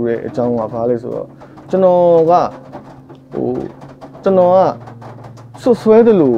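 A man speaking Burmese in short phrases with pauses between them, over a steady low hum.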